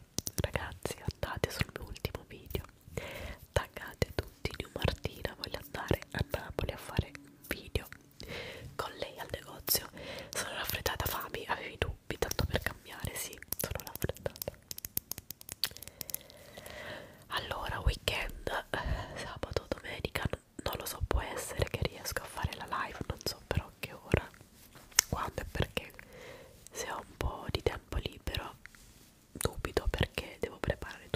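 A woman whispering close to the microphone, mixed with frequent sharp clicks and scratchy rubbing as a makeup brush and a small tube are worked against the microphone grille.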